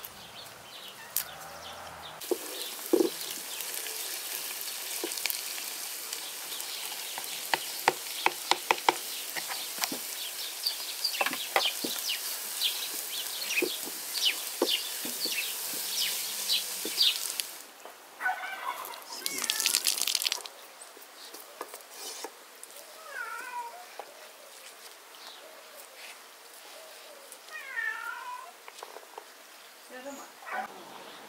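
Chopped greens frying in a hot pan, a steady sizzle full of sharp crackles and spoon clicks as they are stirred. The sizzle stops abruptly at about 17 seconds, leaving quieter background with a few short calls.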